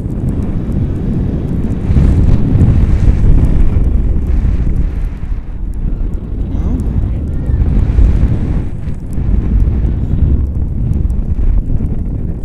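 Wind rushing over the microphone of a camera on a paraglider in flight: a loud, low, steady rumble that swells and eases in gusts.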